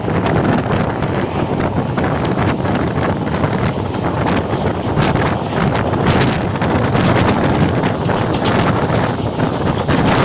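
Wind buffeting the microphone at the open window of a moving passenger train, over the train's steady running noise.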